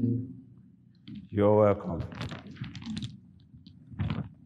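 A music cue fades out, then a man's short, loud voiced grunt, followed by a run of light clicks and knocks.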